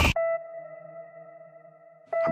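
A loud build-up in a film trailer's score cuts off abruptly, leaving a single sustained electronic tone that rings on and slowly fades. A voice briefly calls a name just after the cut.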